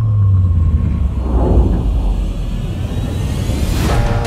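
Deep cinematic low rumble from trailer sound design: a low tone slides down over the first second into a steady heavy rumble, and a rising whoosh swells near the end.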